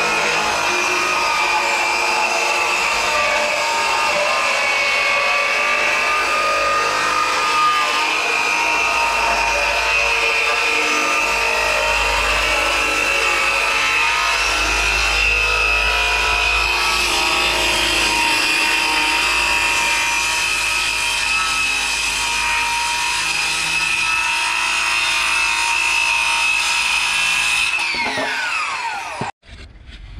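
Ryobi circular saw ripping a long wooden board lengthwise to width, a loud steady high whine of the blade in the cut. Near the end the motor is let off and winds down with a falling whine before the sound cuts off.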